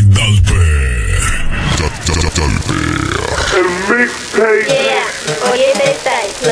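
DJ intro mix: a heavy bass beat for the first second and a half, then a processed, pitch-shifted voice sample with wobbling, bending pitch, grunt-like, with no clear words.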